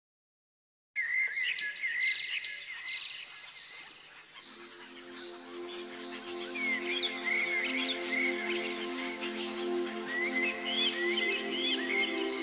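After about a second of silence, small birds start chirping, many short rising and falling calls. Soft, held music chords come in underneath about four seconds in.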